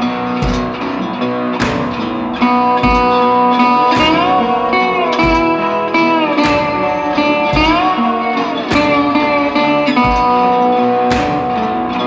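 Instrumental blues music: a slide guitar plays sustained notes that glide up and back down twice, over a steady low thumping beat about once a second.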